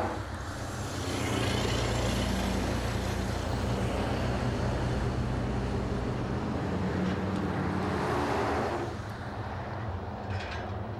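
Diesel engine of a utility line truck running steadily, with a low hum and broad mechanical noise, easing off a little near the end.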